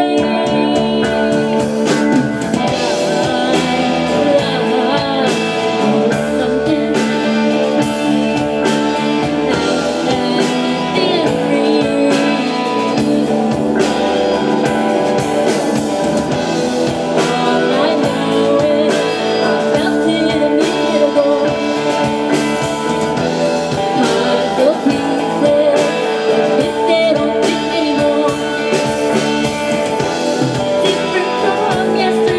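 A live rock band playing a passage of a song: electric guitars over bass guitar and a drum kit, with a steady beat.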